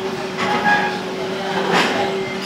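A man's voice holding one long, steady note at the close of a line of Quran recitation, over a faint steady hum, with two brief clatters about half a second in and near the end.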